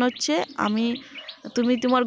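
A woman speaking, with faint bird chirps heard in a short pause about a second in.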